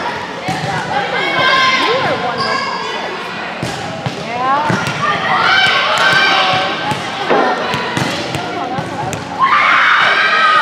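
Girls' voices calling out and chattering across a large gym, loudest about two seconds in, around six seconds in and near the end, with scattered thuds of volleyballs bouncing on the hardwood court and being hit.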